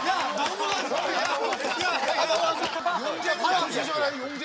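A group of people talking over one another, with some laughter mixed in.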